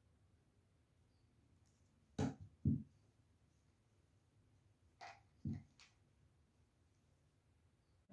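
Short knocks from plastic paint squeeze bottles being handled on the work table: two about two seconds in, then three more about five seconds in. Otherwise the room is quiet.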